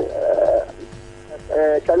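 A brief, rough, croaky voice sound, followed after a short pause by a man talking.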